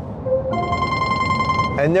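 Incoming phone call ringing: a steady electronic ring tone that pauses briefly and starts again about half a second in.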